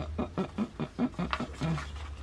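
Paper cash envelope being handled and opened by hand, a run of short crackles and rustles.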